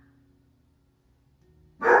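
Quiet room tone with a faint, steady low hum, cut off near the end by a sudden short, loud sound.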